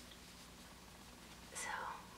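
Quiet room tone, then near the end a woman says a soft, whispered "so".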